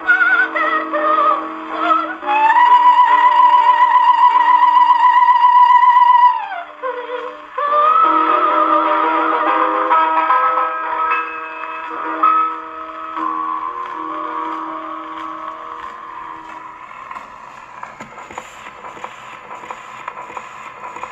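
A 1917 Victor acoustic phonograph playing a 78 rpm record of a 1930s German song. A singer holds one long high note with vibrato that slides down, the accompaniment plays the closing bars, and the music fades out near the end, leaving only the needle's faint surface noise.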